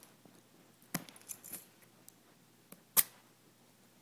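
Small metal keys clicking and scraping against a cardboard box as they pry at packing tape, with a few short scratches about a second in and one sharp click about three seconds in, the loudest sound.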